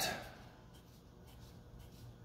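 Felt-tip marker drawing a row of short tick marks on paper: a string of faint, quick strokes.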